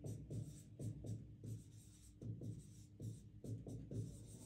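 Felt-tip marker writing on a whiteboard: a quick string of short, faint strokes as letters are drawn.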